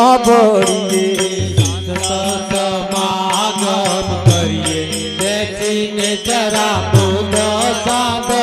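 Gujarati devotional bhajan music played live: harmonium with a wavering, ornamented melody line over it, deep drum bass notes every second or two, and fast steady percussion strokes.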